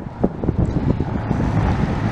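A car driving by through the intersection, a steady road-noise hiss that builds about half a second in, with wind buffeting the microphone.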